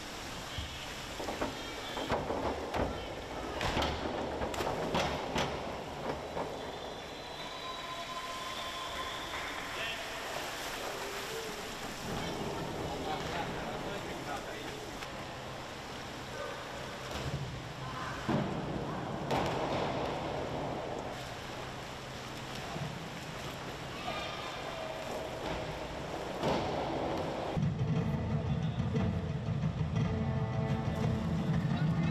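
Echoing indoor pool-hall sound: indistinct voices and water splashing, with a few sharp knocks about two to five seconds in.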